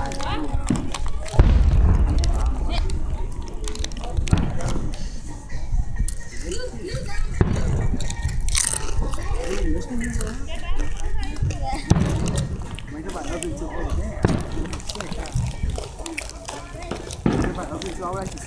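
Aerial firework shells bursting in deep booms every few seconds, about six in all, the loudest about a second and a half in, with people's voices in the background.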